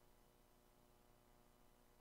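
Near silence: only a faint steady hum on the broadcast feed.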